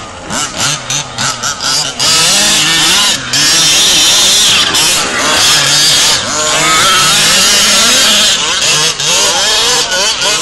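Several radio-controlled buggies' small two-stroke engines revving, their pitch rising and falling over and over as the cars race and slide through sand.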